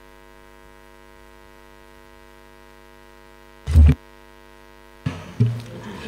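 Steady electrical mains hum with many overtones in the chamber's sound system, broken once by a brief loud burst a little before four seconds in. The hum cuts off suddenly about five seconds in.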